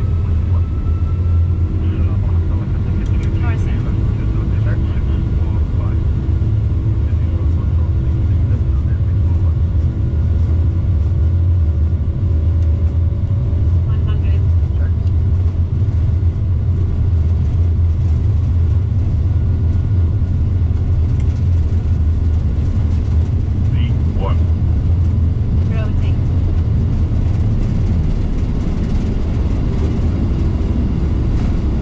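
An Airbus A330-200 on its takeoff roll, heard from inside the cockpit: a loud, steady low rumble of the engines at takeoff thrust together with the wheels on the runway.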